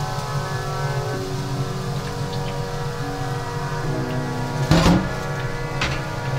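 Background music of sustained chords that change about once a second. About three quarters of the way in, a short, loud burst of noise cuts across it, and a brief click follows just before the end.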